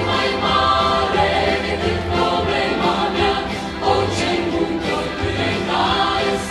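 Large choir singing, many voices in held chords that change every second or so.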